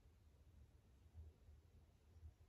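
Near silence: room tone with a faint low rumble.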